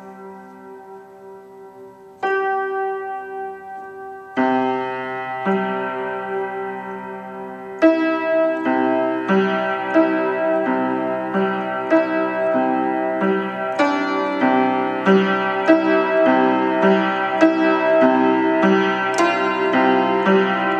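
Vintage 1940s Tokai upright piano played slowly: sparse held chords a few seconds apart, then from about eight seconds in a louder, steadier line of notes about one a second. The instrument has its A, B and E out of tune in one octave group, in a horrible way.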